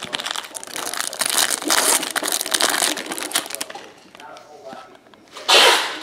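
Foil wrapper of a Panini Spectra football card pack crinkling and tearing as it is opened, a dense run of crackles for about the first three and a half seconds. A brief loud rustle follows near the end.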